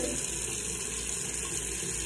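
Bathroom tap running steadily into the sink.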